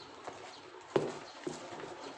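A few sharp knocks, the loudest about a second in, as large truck tyres are shifted about on a pickup's metal bed and side rack.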